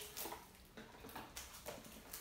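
Faint, scattered light taps and rustles from small cardboard cologne boxes being handled and shuffled together.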